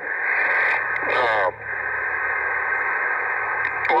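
Two-metre single-sideband radio hiss from a Yaesu FT-857D's speaker, a steady band-limited rush as the distant net control station pauses between words. A brief hesitant voice comes through the hiss about a second in.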